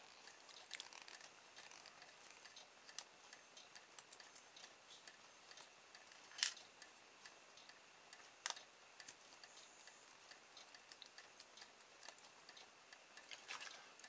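Near silence with faint, scattered small clicks of a small screwdriver and screws on a plastic micro servo case as the case screws are taken out, two clicks a little louder around the middle.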